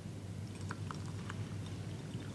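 Clean water being poured from a glass jug into a stemmed glass of garden soil: a faint wet trickle with a few small clicks about a second in.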